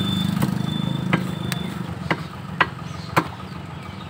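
An engine running, loudest at the start and fading away over the first two seconds. About six sharp knocks, roughly half a second apart, come from meat being chopped on a wooden butcher's block.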